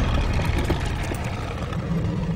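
A steady low rumble with a noisy hiss above it.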